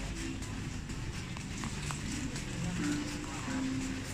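Supermarket ambience: indistinct voices of other shoppers over a steady background hum, with a few light clicks and rustles.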